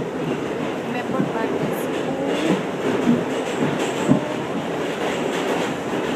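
Passenger train car in motion: a steady running rumble of wheels on the track, with a few irregular short knocks.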